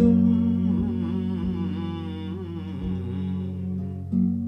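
A man humming a wavering, ornamented melody over a steady low drone held on an electronic keyboard.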